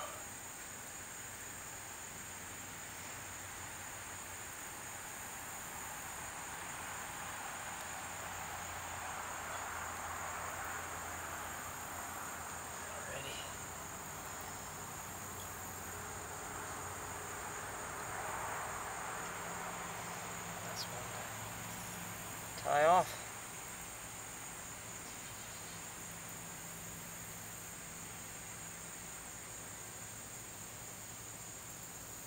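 Steady high-pitched insect chorus running on and on, with a short, louder pitched call about three-quarters of the way through.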